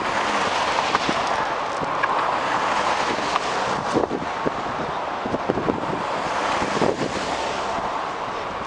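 City street traffic noise, a steady hum of cars on the road, with irregular low buffeting from wind on the microphone about halfway through.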